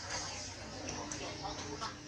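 Indistinct voices of people talking in the background over steady outdoor noise.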